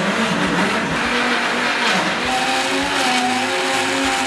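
Countertop jug blender running, its motor churning a thick shake of Greek yogurt, banana, berries and oats. The motor's pitch wavers and dips about halfway through, then holds steady.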